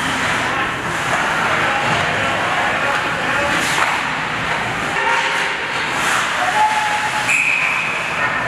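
Ice hockey rink ambience: a steady wash of spectator chatter and skating noise, with a brief high tone near the end.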